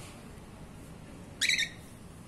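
Cockatiel giving one short, loud squawk about one and a half seconds in, rising sharply in pitch at its start.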